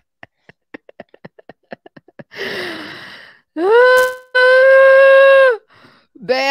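A woman laughing: a quick run of short staccato chuckles, then a breathy gasping laugh that falls in pitch. It ends in a rising, long-held high vocal "eee", the loudest part.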